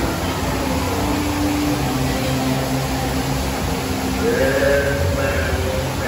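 Dark-ride soundtrack: a long held low tone, then a higher one that slides up about four seconds in and holds, over a steady low rumble.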